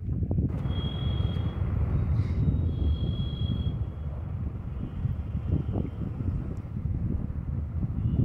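Wind buffeting a phone microphone outdoors: a steady, uneven low rumble.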